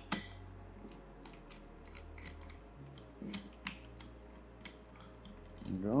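Light, irregular clicks and ticks of a small hex screwdriver turning an M2.5 screw into a 3D printer's X-gantry bracket, with one sharper click right at the start.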